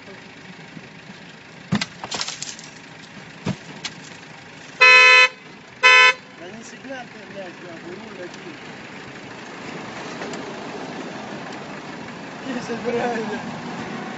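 A car horn honks twice about five seconds in, a longer blast and then a short one, after a few sharp knocks.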